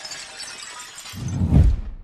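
Logo-animation sound effect of breaking glass: shards tinkling and scattering. A deep low boom swells in about a second in, the loudest part, and dies away at the end.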